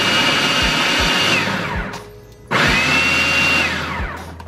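Food processor pulsing twice as it chops onions, peppers and garlic. Each time the motor whines up to speed, runs for about a second and a half and winds down; the second pulse starts about two and a half seconds in.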